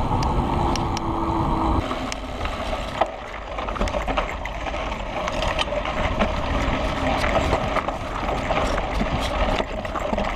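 Kona Process 134 mountain bike ridden down a dirt singletrack: wind rushing over the camera microphone and tyres on dirt, with frequent clicks and rattles from the bike over the rough ground. A short steady whine sounds briefly about half a second in.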